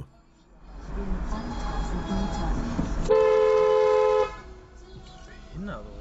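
A car horn sounding once, a steady two-tone blast of a little over a second, over the noise of the car driving. It is a warning honk at a car pulling out just in front.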